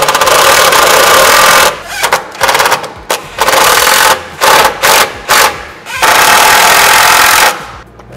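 Cordless impact driver with a Torx bit running a long-threaded screw into an interceptor cover plate, hammering rapidly and loudly. It goes stop-and-go: a long run, a few short bursts, another run, more short bursts, and a last long run that stops shortly before the end. The screws are being driven in close before final torquing by hand.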